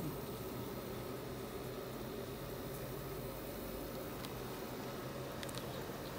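Steady low machine hum with a hiss, unchanging throughout, with a few faint clicks near the end.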